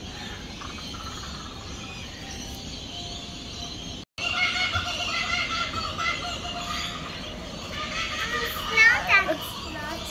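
Laughing kookaburra calling from just after a brief dropout about four seconds in, over a steady background, with a child's voice at times near the end.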